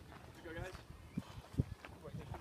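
Faint voices talking in the background, with a few low thumps, the loudest a little after halfway.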